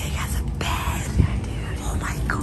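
Rustling and handling of blankets and pillows being arranged in a crib, with a soft thump about a second in, over low room rumble and quiet, hushed voices.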